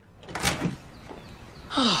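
A door opening, with a sharp bump about half a second in.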